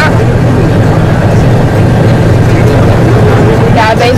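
A tour coach driving along, heard from inside the passenger cabin: a steady, loud low rumble of engine and road noise.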